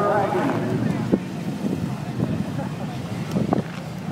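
Car engine idling with a steady low sound, with wind noise on the microphone. A voice is heard briefly at the start.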